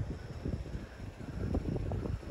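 Wind buffeting the microphone outdoors: an uneven low rumble that comes and goes in gusts.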